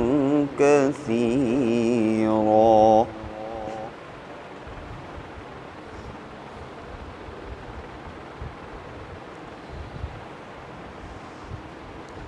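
A male reciter chanting the Quran in a melodic tajweed style, drawing out a long final note with a wavering pitch. The voice breaks off about three seconds in, and a fainter tail fades within the next second.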